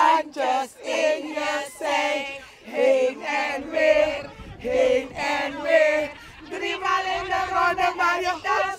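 A group of women singing and chanting together in short, loud phrases.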